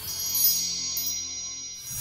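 Logo-sting sound effect: a bright shimmering chime with a sparkle about half a second in, ringing and slowly fading over a low held chord. Another swell rises near the end.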